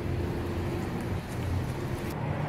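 Steady low rumble of road traffic, with a faint steady hum over it.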